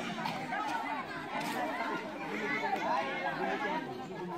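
Crowd chatter: many children and adults talking over one another at once, with no single voice standing out.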